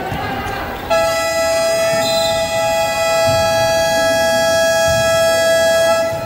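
Arena game horn (scoreboard buzzer) sounding one long, steady, loud tone that starts suddenly about a second in, holds for about five seconds and then cuts off.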